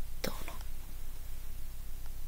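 A woman's voice saying one short word just after the start, then a pause of room tone with a steady low hum.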